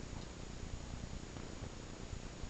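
A cat purring: a low, steady rumble.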